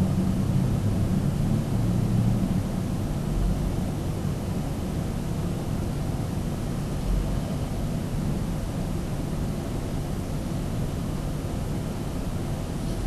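Steady background hum and hiss with no distinct events, the low hum a little stronger in the first few seconds.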